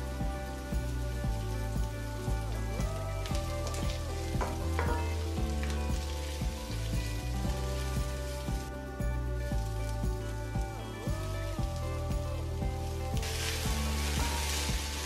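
Onions and garlic sizzling in hot oil in a nonstick frying pan, stirred with a wooden spoon that scrapes now and then, under background music. Near the end the sizzle turns louder and brighter.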